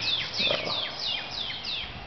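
A songbird singing a fast run of repeated clear notes, each sliding down in pitch, about three a second, stopping just before the end.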